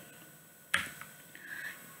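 A single sharp click about three quarters of a second in, fading quickly, followed by a faint short sound near the end over quiet room tone.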